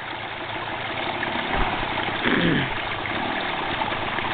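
Small dirt bike's engine running at low speed behind the horse, with one falling sweep in pitch about halfway through as the throttle eases off, over a steady hiss.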